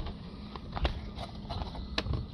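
A cardboard parts box being torn open and handled, with a new plastic boost pressure sensor taken out of it: a few short crinkles and clicks, the sharpest just before the end.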